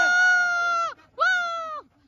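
A person's voice giving two long, high-pitched shouts: the first is held for about a second, and the second, shorter one follows a moment later, each dropping off at the end.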